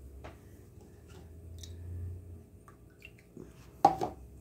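Faint handling noises: a few light clicks, then a sharper knock near the end, as a hand takes hold of a cut plastic water bottle on a wooden table.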